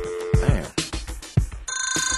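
Hip-hop beat with heavy kick drums, thinning out. Near the end a telephone starts a rapid trilling ring.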